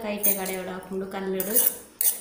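A metal spoon scraping and clinking against a steel kadai as grated coconut and greens are stirred in it. A person's voice holds long, gliding notes over the stirring.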